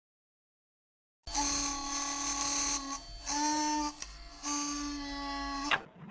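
A buzzing logo sound effect starting about a second in: a steady electric buzz in three bursts, the middle one short and a little higher, ending in a quick rising sweep just before the end.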